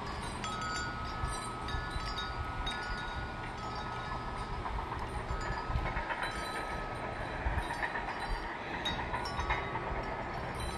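Distant bulldozer running in a creek bed, heard as a low continuous rumble, with steady high chime-like ringing tones over it.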